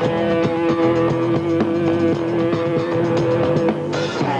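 Live funk-rock band playing an instrumental passage: electric guitar, bass and drums, with one long held note over a busy bass line and steady beat. The held note stops shortly before the end.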